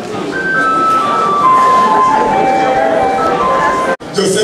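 A simple electronic-sounding tune of single clear held notes, stepping mostly downward in pitch, over background chatter; it breaks off abruptly at the end.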